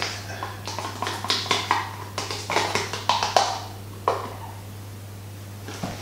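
A metal spoon scraping and tapping against a plastic tub and a stainless steel pot as cream is spooned in: a string of clicks and scrapes for about four seconds, then only a steady low hum.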